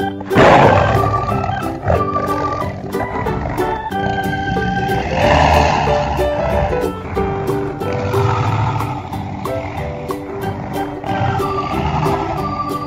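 Dragon roar sound effects over electronic organ background music. The loudest roar comes just after the start, with more roars about halfway through and again a little later.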